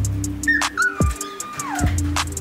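Background music with a steady beat, over which a wolfdog pup gives one high whine starting about half a second in, holding its pitch and then sliding down near the end.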